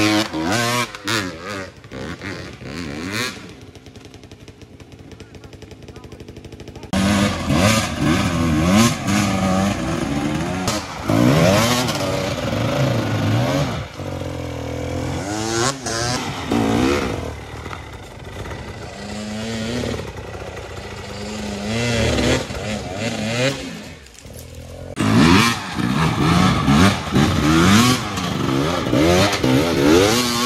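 Enduro dirt bike engine revving hard in repeated bursts, rising and falling, as it is forced up a steep climb under heavy load. It is quieter between about four and seven seconds in.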